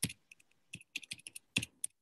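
Typing on a computer keyboard, heard through a video call's audio: an uneven run of about a dozen quick key clicks.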